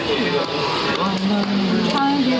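People talking and laughing.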